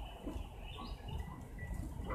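A few faint bird chirps in the background, short high notes, some falling in pitch, over a steady low outdoor rumble.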